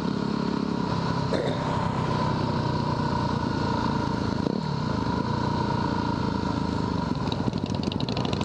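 Yamaha WR250R's 250 cc single-cylinder four-stroke engine running steadily while cruising on the road. The engine's pitch drops once about halfway through.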